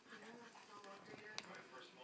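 Faint, soft sounds of two dogs nuzzling each other right at the microphone, over quiet television voices, with one sharp click about one and a half seconds in.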